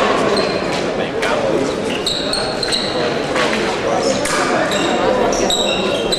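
Fencers' footwork on a metal piste in a large hall: sneaker soles squeaking briefly several times and feet stamping in sudden knocks, over a steady murmur of voices echoing around the venue.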